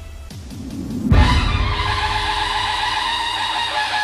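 Background music track: a swelling transition builds to a sudden loud hit about a second in, then steady melodic music with sustained notes follows.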